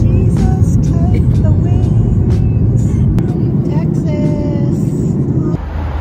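Airliner cabin noise heard from a window seat: the loud, steady low rumble of the jet engines and airflow as the plane climbs after takeoff. It cuts off about five and a half seconds in.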